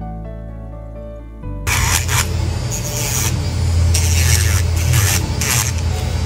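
Soft background music, then about a second and a half in, an electric nail drill with a sanding band starts sanding the surface of a toenail. It makes a low hum under a scratchy rasp that swells and fades with the strokes.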